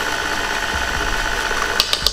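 KitchenAid Heavy Duty stand mixer running steadily with a constant motor whine, mixing cake batter. A couple of light clicks come near the end.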